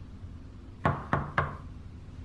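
Knocking on a door: three quick raps about a second in.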